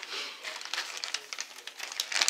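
Clear plastic bag crinkling as it is picked up and handled among other bagged items: a run of small, irregular crackles.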